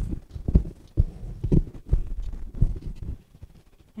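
Irregular soft thumps and knocks on a work table, about six in the first three seconds, as a hand handles things on the table and presses the glued rice paper down.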